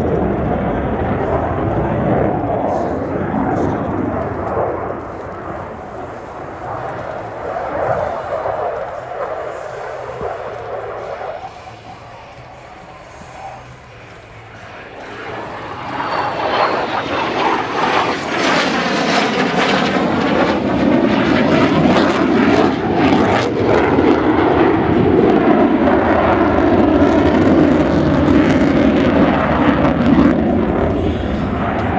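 Royal Danish Air Force F-16AM Fighting Falcon's Pratt & Whitney F100 turbofan jet noise, loud at first, dropping to a lull about twelve seconds in, then swelling back to its loudest from about sixteen seconds as the jet passes close overhead, with sweeping, wavering tones through the pass.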